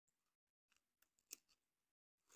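Near silence, with faint scratchy handling noises and one soft click just past halfway as a nylon Velcro strap is threaded around the e-bike frame.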